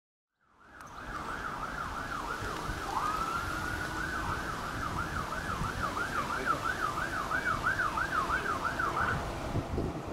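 Fire engine siren sweeping quickly up and down, about three times a second, with one long rising wail held near the top about three seconds in. It then goes back to the fast sweep and stops about a second before the end, over a low rumble and wind on the microphone.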